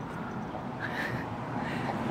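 A steady low rumble of vehicle or street traffic noise, with a faint brief higher sound about a second in.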